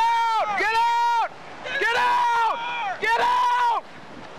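A man screaming in four long, high-pitched yells, each held for under a second, with a steady rushing noise in the short gaps between them.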